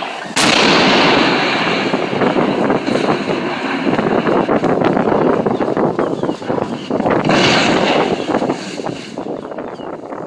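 Demolition charges at the base of a concrete cooling tower go off with a loud blast, followed by several seconds of continuous loud noise as the tower topples and collapses, with a further loud burst about seven seconds in.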